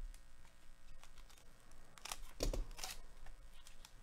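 A baseball card pack handled in gloved hands: a few soft clicks, then a cluster of crinkling rustles between about two and three seconds in as the wrapper is torn and the cards are slid out.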